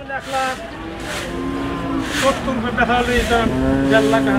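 Background chatter of several men's voices overlapping, some calling out with long drawn-out syllables.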